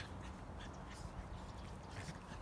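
Two animals playing: short, scattered calls and small clicks over a steady low rumble.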